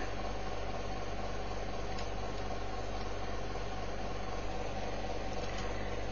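Steady low hum and hiss, the recording's background noise, even throughout.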